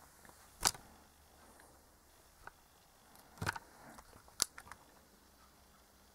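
A few sharp clicks and light knocks of handling against a quiet room background: a loud click under a second in, a short cluster about halfway, and another sharp click soon after.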